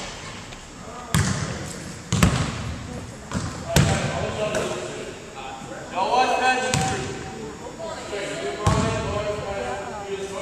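Basketballs bouncing on a hardwood gym floor: about five sharp thuds at irregular intervals, each ringing on in the hall's echo, with people's voices calling out between them.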